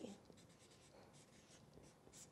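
Faint, short strokes of a felt-tip marker writing a word on chart paper.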